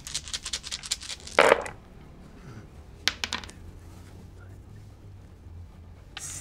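A handful of ten-sided dice rattling and clattering across a tabletop in a quick run of clicks for about a second and a half, ending in one brief louder sound. A few more clicks follow around three seconds in as the dice settle.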